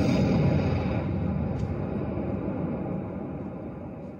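A dense noise effect from the DJ setup that starts abruptly and then slowly fades out over the whole stretch, left to die away as the mix ends.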